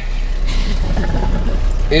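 Boat engine idling: a steady low rumble with a wash of hiss over it.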